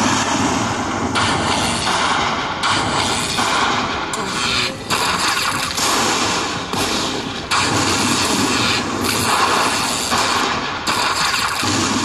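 Lightning Link slot machine's win celebration as the bonus win counts up: a loud, dense rushing noise that comes in surges of about a second each.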